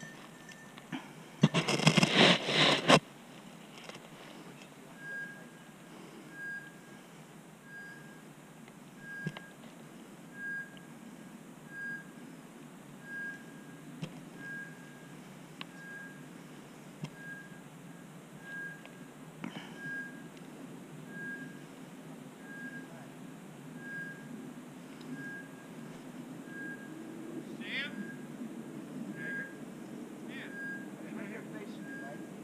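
Hunting dog's electronic beeper collar giving a short, even beep about once every 1.3 seconds, starting a few seconds in; this steady quick beeping is the kind a beeper collar gives in point mode, when the dog has stopped on a bird. Near the start, a loud harsh sound lasts about a second and a half.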